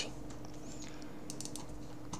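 A few faint, short clicks at a computer around the middle, over a steady low electrical hum.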